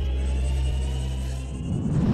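Intro logo sting: a low, steady drone with a thin high tone above it, breaking about a second and a half in into a rough, swelling rumble as it builds toward the logo reveal.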